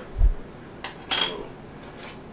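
A dull thump near the start, then small hard plastic and metal parts of a puck light clattering and clinking on a desk about a second in, as they are put down.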